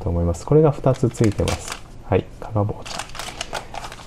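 Paper sachets of tea and drip coffee rustling and crinkling as they are handled in the hand, in short crackles about a second and a half in and again around three seconds.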